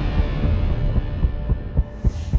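Trailer score falling away into a low, heartbeat-like pulse: deep thumps about four a second in the second half, over a fading sustained drone.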